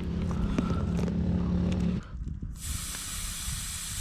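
An engine idling, which cuts off about halfway. Then air hisses steadily out of a quad's tyre valve as the tyre is let down to a lower pressure for more grip on soft ground where the wheels were spinning.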